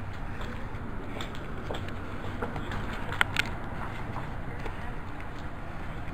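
Steady low rumble of road traffic and vehicle engines in a parking lot, with two short sharp clicks a little over three seconds in.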